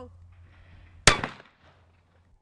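A single shotgun shot from an over-and-under shotgun about a second in: one sharp report with a short fading tail.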